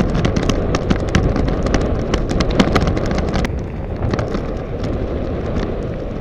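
Mountain bike riding a rough dirt track, heard from a bike-mounted camera: a low wind rumble on the microphone with rapid clicks and rattles as the bike jolts over the stony surface. The clicking thins out about three and a half seconds in.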